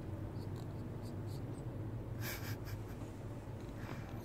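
A short scratchy rustle a little past halfway, from the parrots shifting on a rope perch, with a few faint ticks, over a steady low hum.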